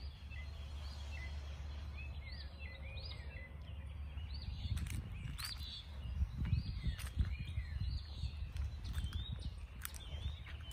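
Small songbirds chirping over and over, short arched high notes, while footsteps tread a paved garden path, heaviest in the second half.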